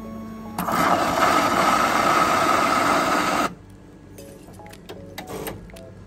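Franke automatic coffee machine running as it dispenses a matcha latte: a loud buzzing hiss that starts about half a second in, lasts about three seconds and cuts off suddenly. Quieter background music plays around it.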